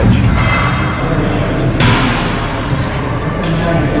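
Gym background with music playing and a single sharp thud about two seconds in.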